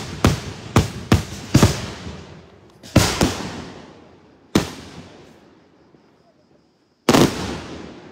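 Daytime aerial fireworks shells bursting in the sky with sharp, echoing bangs. There is a quick string of four bangs in the first two seconds, two more about three seconds in and one near the middle. After a short lull, a loud burst comes near the end.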